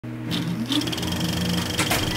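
Film projector running with a fast, even mechanical clatter over a low hum that rises in pitch about half a second in.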